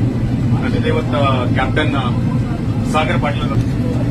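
A man speaking over an airliner's cabin PA in short phrases, over the steady low hum of the aircraft cabin.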